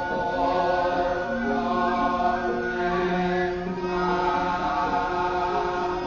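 Javanese court gamelan music with voices singing a slow chant in long held notes.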